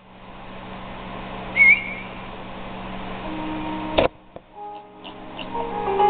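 Movie trailer soundtrack heard through a speaker: a hiss that grows steadily louder, a short sharp whistle-like chirp under two seconds in, a click about four seconds in, then soft sustained piano-like notes that build toward the end.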